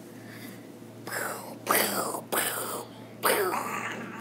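A voice making four short, breathy vocal sounds without words, each falling in pitch.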